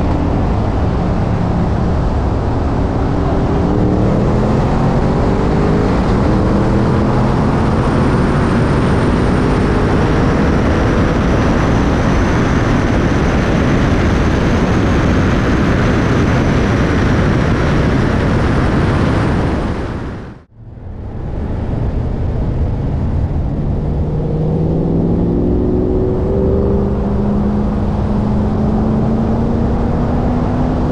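Wind rush and the 2020 BMW M5 Competition's twin-turbo V8 at full throttle in a roll race. The engine note rises in pitch in steps, then is buried under loud wind noise as speed passes 130 mph. The sound drops out abruptly about two-thirds in and comes back at cruising speed, the engine note beginning to rise again.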